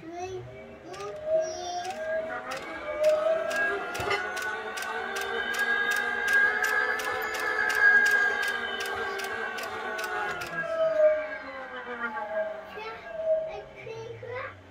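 A 1.5 kW three-phase permanent-magnet exercise-bike motor hand-cranked as a generator: its whine rises in pitch as it spins up, peaks around the middle and falls again as it slows, with a regular ticking about three times a second while it turns.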